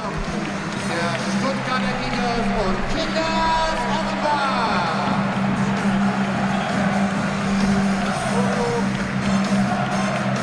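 Music played over a football stadium's loudspeakers, mixed with the noise of a large crowd in the stands, at a steady level.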